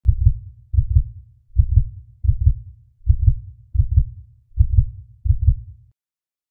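Heartbeat sound effect: about eight low, paired lub-dub thumps at roughly 80 beats a minute, stopping suddenly near the end.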